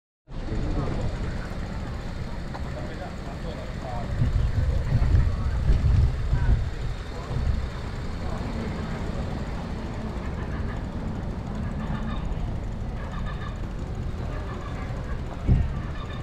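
Wind buffeting the microphone of a camera on a moving bicycle, gusting loudest about four to seven seconds in, over steady street background noise.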